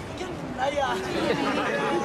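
Several people talking over one another: overlapping voices and chatter.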